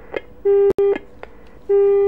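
Telephone line tone on the phone-in line: two loud beeps of a single steady tone about 1.25 s apart, each broken by a split-second dropout.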